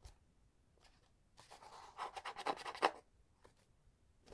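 Fingers rubbing and scratching along a textured white cardboard perfume box as it is turned over in the hands. A soft, rapid, scratchy rustle lasts about a second and a half in the middle, with a few light taps before and after it.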